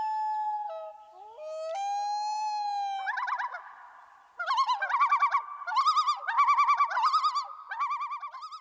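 Common loon calling: a long wail that glides up and holds, stepping between notes, then from about three seconds in a rapid wavering tremolo repeated several times.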